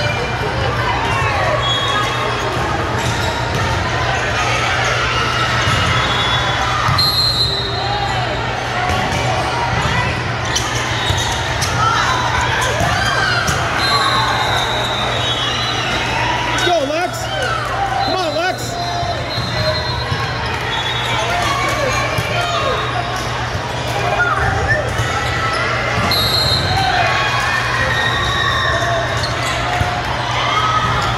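Busy indoor volleyball hall: many overlapping voices from players and spectators on several courts, mixed with the smacks of volleyballs being hit and bouncing, all echoing in the large hall over a steady low hum.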